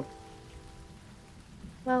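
Soft background music of held, sustained chords over a faint hiss, with one spoken word near the end.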